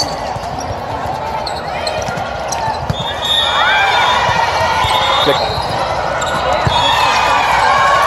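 Indoor volleyball rally on a sport-tile court: sneakers squeak in short chirps as players move, the ball is struck a few times, and voices call and chatter through the hall.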